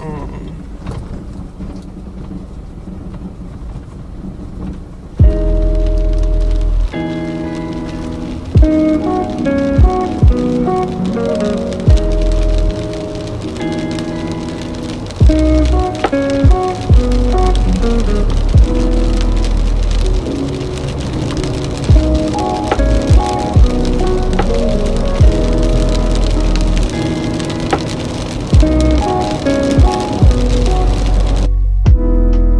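A steady hiss of rain on a moving car for about five seconds, then background music with a heavy bass beat comes in over it and carries on.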